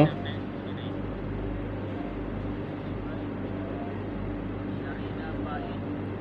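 Steady background noise with a constant low hum, and faint indistinct voices now and then.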